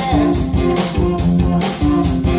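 Live rock band playing: electric guitars and bass over drums, with a steady beat of about four drum hits a second.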